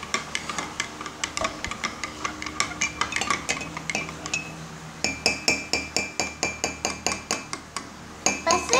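A metal spoon stirring in a ceramic mug, clinking against its sides in a quick, even rhythm. From about five seconds in, the clinks come louder and faster, with a ringing tone after each one.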